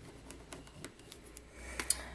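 Faint, scattered light clicks and taps of a glue pen and paper being handled on a cutting mat, with a sharper click near the end.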